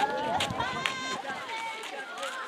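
Netball players' voices calling out across an outdoor court during play, with a single sharp knock a little under a second in.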